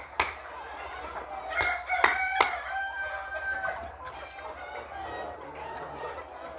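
A flock of Lohmann Brown laying hens clucking and calling, with one long drawn-out call for about two seconds in the middle. A few sharp clicks come just after the start and around the second and a half to two and a half second mark.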